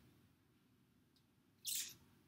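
Near silence: room tone, broken near the end by one short breath drawn in before speaking.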